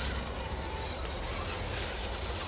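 Steady low wind rumble on the microphone, with the faint whine of a Redcat Gen8 Scout II RC rock crawler's electric motor as it creeps over dry leaf litter.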